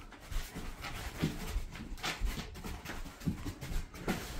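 A dog tugging on a plush toy, with a few short, low grunts and irregular scuffling sounds, fairly quiet.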